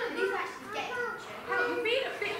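Children's voices talking, short spoken exchanges between young performers.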